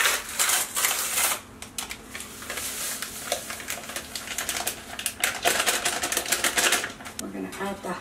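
Quick, irregular clicks and rustles of kitchen handling as gelatin and blue jello powder go into a bowl.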